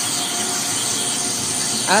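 Steady hiss and hum of running ICEE frozen-drink machines, with a faint steady tone in the first half.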